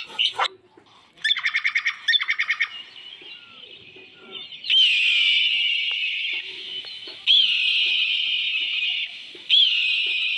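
Birds calling in the trees: about a second in, a rapid run of repeated chirping notes; from about halfway, long, high, buzzy calls, each opening with a quick upward sweep, three in a row.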